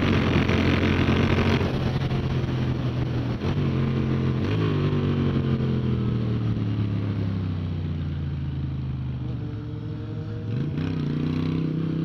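Moto Guzzi V7's air-cooled V-twin at track speed under onboard wind rush: the engine note holds steady, steps up about four and a half seconds in, falls slowly as the bike slows for a corner, and climbs again near the end as the throttle opens.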